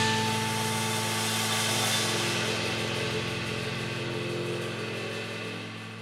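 The ring-out of a band's final hit: a cymbal wash decays while a low chord is held underneath, the whole sound slowly fading.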